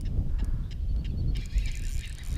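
Wind buffeting the camera microphone, a steady low rumble, with scattered faint clicks and a short hiss about a second and a half in.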